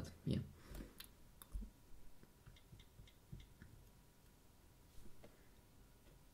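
Faint, scattered small clicks and ticks with a soft low thump about a second and a half in: handling noise from hands shifting on a wooden table beside the phones, over quiet room tone.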